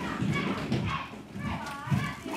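Children's voices chattering in the background, indistinct, with no clear words.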